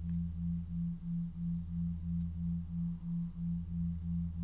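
A low electronic tone pulsing about three times a second, with a steady deeper hum beneath it.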